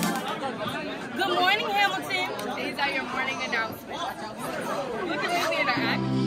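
Indistinct chatter of many voices talking over one another, a room full of people. Steady background music comes back in right at the end.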